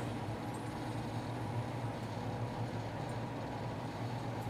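Steady low hum over a faint even hiss: room tone, with no distinct sound event.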